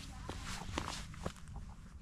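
Footsteps on stony, mossy ground: a few separate footfalls about half a second apart.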